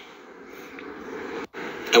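Faint steady background hiss with no distinct event, broken by a brief dropout about one and a half seconds in where the recording cuts; a voice begins at the very end.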